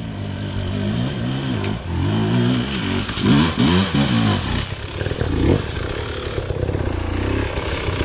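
Enduro dirt bike engines running. One engine is revved up and down in repeated short blips through the first half, then settles to a steadier run near the end.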